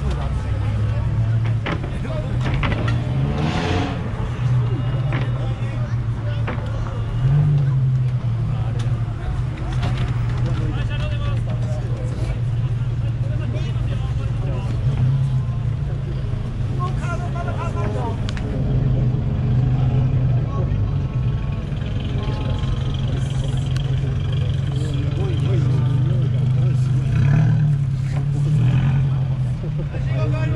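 Engines and exhausts of modified cars running with a steady low drone as they drive out slowly one after another, with a few short revs, about three and a half, seven and a half and twenty-seven seconds in. People talk over it.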